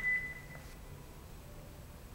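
A steady, high, beep-like tone that fades out within the first second, then faint room noise.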